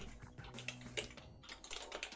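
Computer keyboard typing: a handful of separate keystrokes at an uneven pace.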